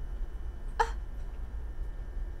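A woman's single short excited exclamation, "Ah!", about a second in, over a steady low background hum.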